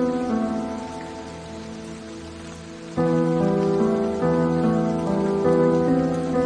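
Soft solo piano music over a steady background of rain sound. A chord dies away over the first three seconds, and a new phrase starts about three seconds in.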